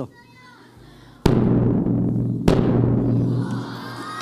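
Large bass drum struck hard twice, about a second and a quarter apart, each hit leaving a long low booming ring that fades slowly. It is struck to send a pulse of air from the drumhead at a candle flame.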